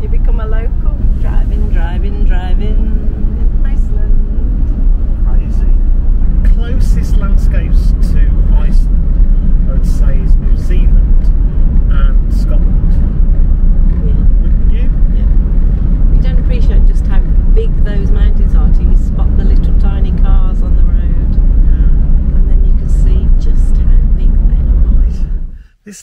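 Steady low rumble of a camper van's road and engine noise heard inside the cab while driving on a gravel road, with a man's voice talking over it. The rumble cuts off suddenly near the end.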